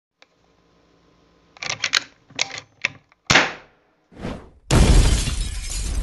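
Intro sound effect for a logo: a quick run of sharp clicks and knocks, then a louder crack with a ringing tail about halfway through. A short swell follows, then a steady loud noise with a heavy low rumble sets in near the end.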